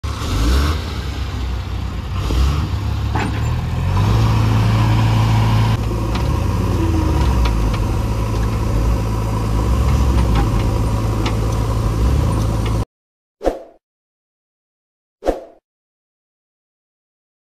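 Heavy diesel engines of a JCB 3DX backhoe loader and a Tata 2518 tipper truck running steadily, with occasional clatter as the backhoe loads soil into the truck. The sound cuts off suddenly about 13 s in, and two short sound-effect hits follow.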